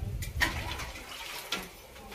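Stainless-steel utensils being washed by hand: water splashing and scrubbing in a steel plate, with a sharp clink of metal about half a second in.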